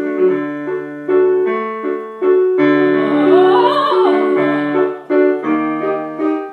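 Piano playing a run of repeated chords, struck every half second or so. In the middle a high soprano voice sings a short wavering phrase with vibrato over it.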